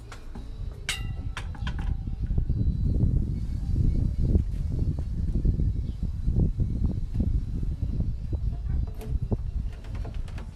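A sharp metallic clink with a brief ringing about a second in, then loud low rumbling and knocking from the phone's microphone being handled and moved.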